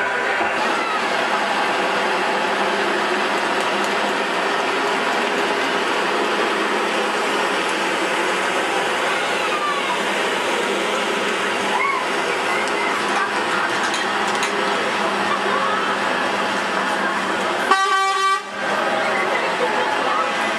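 Heavy lorries towing fairground ride trailers, their engines running in a steady drone, with a brief vehicle horn toot near the end.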